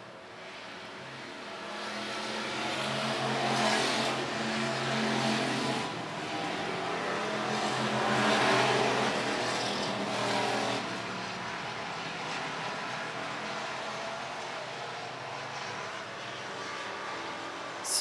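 Dirt-track hobby stock race cars running laps at speed. Their engines swell louder twice as the pack goes by, about three to five seconds in and again around eight to ten seconds, then settle to a steadier, quieter drone as the cars move off around the track.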